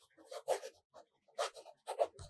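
Fountain pen stub nib scratching across notebook paper in a few short strokes as words are written.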